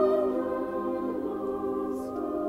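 A choir of boys and men singing a long held chord, loudest at the start and easing off slightly.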